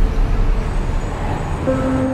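Dense city traffic ambience, a steady rumble of road vehicles. A low sustained music tone comes in near the end.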